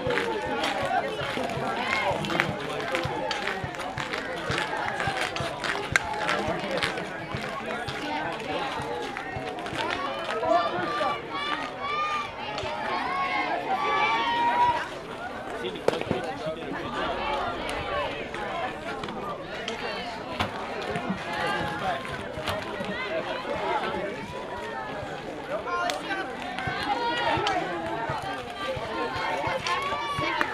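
Many overlapping voices of players and spectators talking, calling out and cheering, none of it clear words, with a few sharp knocks now and then.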